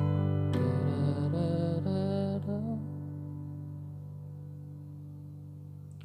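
Piano playing a G major 7 chord: the left hand sounds G–D–G and the right hand adds the upper chord notes. A few short notes move over it in the first three seconds. Then the chord is held and slowly fades away.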